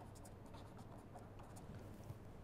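Faint scratching of a marker pen writing on paper in several short strokes, over a low steady room hum.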